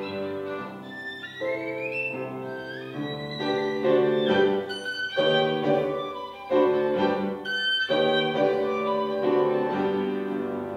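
Violin played with upright piano accompaniment, sustained bowed notes with an upward slide on the violin about a second in, then a run of sharply struck notes and chords.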